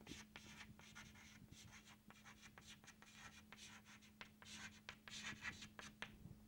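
Chalk writing on a chalkboard: faint, short scratches and taps of the chalk, coming thicker near the end.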